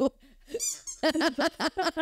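A pink toy pig squeezed once, giving a short high squeak about half a second in. It is sounded to mark a fashion myth as false. A woman's laughter follows.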